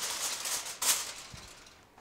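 Aluminium foil crinkling as it is pressed and crimped around the edges of a metal roasting tin. Its loudest crackle comes just under a second in, then it fades.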